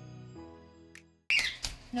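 Soft background music of held keyboard chords, fading out over the first second. Then, after an abrupt cut about a second and a half in, live room sound: a sudden loud noisy burst followed by short sharp clicks.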